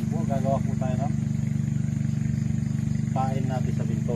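A machine running steadily with a low, fast-pulsing hum, with short snatches of voices twice, near the start and about three seconds in.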